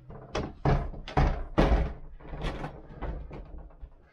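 A tall cupboard door being pushed shut: a run of five or so thuds and knocks over the first few seconds, the loudest about a second and a half in.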